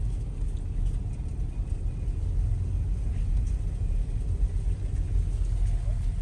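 Car engine and tyres making a steady low rumble, heard from inside the cabin while creeping along a snowy road.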